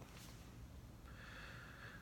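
Near silence of a small room, with a faint breath drawn through the nose starting about a second in.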